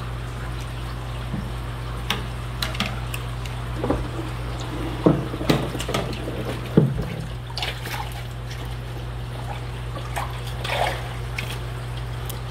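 Aquarium water splashing and dripping as a mesh fish net is swept through a tank and lifted out, in a series of irregular splashes. A steady low hum runs underneath.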